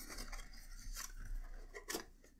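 Faint rustling and scraping of a small cardboard ink box being opened by hand and the glass bottle slid out, with one sharp click near the end.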